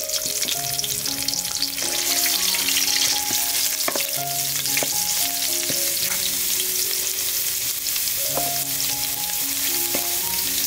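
Curry paste and lime leaves frying in hot oil in an aluminium pot, sizzling steadily while a metal ladle stirs and scrapes it, with a few sharp clinks of the ladle against the pot around the middle and near the end. Soft background music with held notes plays underneath.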